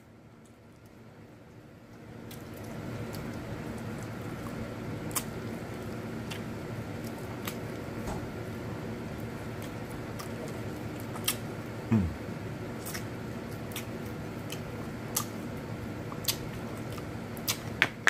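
Eating sounds from someone working through saucy chicken wings: scattered small wet clicks and smacks over a steady low background hum that comes up about two seconds in. About twelve seconds in there is a short low sound that drops in pitch.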